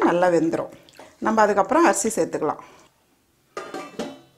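A woman speaking, with a metal ladle stirring and clinking in a steel pan of wet vegetable masala. The sound drops out abruptly for about half a second near the end.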